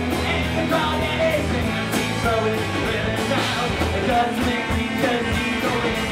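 Live rock band playing loudly: electric guitars, a steady drum beat and a singing voice.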